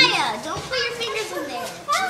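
Overlapping children's voices chattering and calling out, with no clear words, softer than the talk around it.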